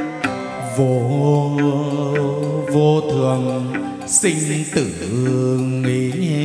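Chầu văn ritual music: a low melodic line held on long notes that bend and slide in pitch, with a few sharp percussion clicks.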